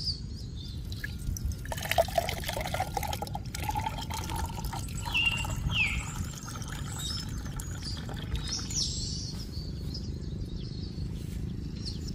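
Coconut water poured from a fresh coconut splashes into a glass, strongest a couple of seconds in, then dies down as the glass fills. Birds chirp in the background, with short falling calls midway and near the end.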